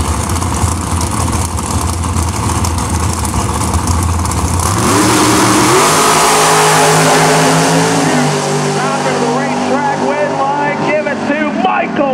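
Two dragsters idling at the start line, then launching about five seconds in, their engines going to full throttle with a rising pitch before the sound fades as they pull away down the strip. A PA announcer's voice comes in over the fading engines near the end.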